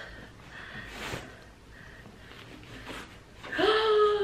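Soft rustling of a fabric dust bag as a handbag is pulled out of it, then, near the end, a woman's drawn-out excited exclamation, falling in pitch.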